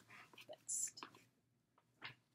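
A woman whispering a few words under her breath, ending with a short hiss, all within the first second.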